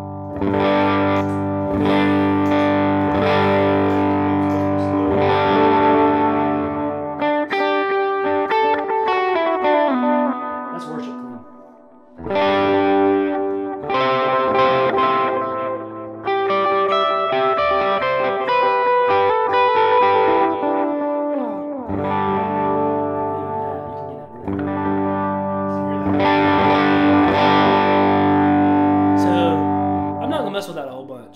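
Electric guitar played through a Line 6 Pod Go worship patch: ringing sustained chords and a descending single-note run, with a light Minotaur overdrive, dotted-eighth tape delay repeats and a long, dark reverb tail. The playing drops off briefly about twelve seconds in and again a little after twenty seconds.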